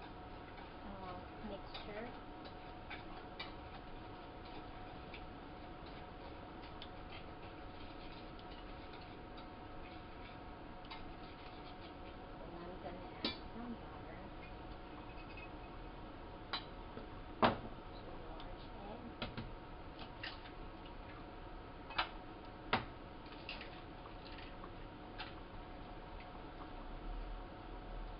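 A utensil stirring dry flour mixture in a mixing bowl: faint scraping with scattered sharp clicks as it knocks against the bowl, the loudest a little past halfway and twice more later on. A low steady hum runs underneath.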